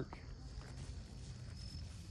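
Quiet outdoor ambience with the mule's faint hoofsteps as it walks from pavement onto grass, and a thin high insect chirp that comes and goes.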